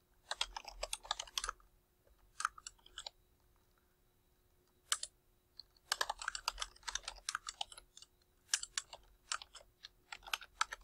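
Typing on a computer keyboard: quick runs of keystrokes, broken by a pause of about two seconds near the middle.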